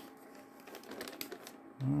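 Metallized anti-static bag crinkling as a circuit board is turned over and laid down on it: a run of soft, irregular crackles.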